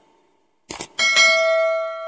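Subscribe-button animation sound effects: a quick double mouse click about three-quarters of a second in, then a bright notification-bell ding at about one second that rings on with several clear tones, slowly fading.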